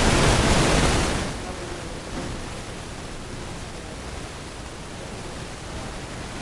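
A sudden burst of rushing noise that lasts about a second and fades away, followed by a steady low hiss of room and recording noise.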